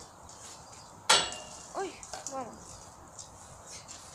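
A single sharp metallic clank with a brief ring about a second in, from the steel frame of a playground twister exercise machine as someone gets onto it.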